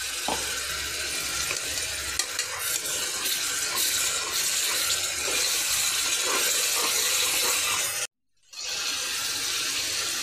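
Masala paste of tomato, cashew and almond sizzling in hot oil in a pressure cooker, with a spoon stirring and scraping it against the pot. The sound cuts out for about half a second around eight seconds in.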